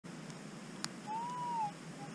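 Metal detector giving a soft target response as the coil sweeps the ground: one short tone that rises and falls, a little past a second in, with a brief tick just before it.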